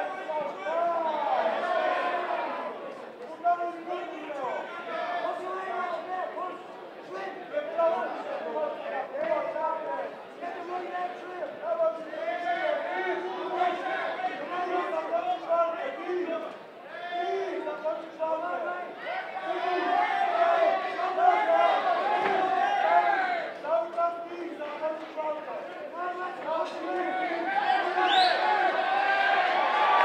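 Fight crowd in a hall shouting and yelling, many voices overlapping, growing louder near the end as it turns to cheering.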